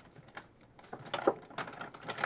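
Plastic marker pens being picked up and set down, a scatter of light clicks and brief rustles.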